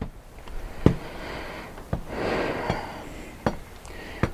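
A man breathing audibly twice, with a few faint clicks between the breaths.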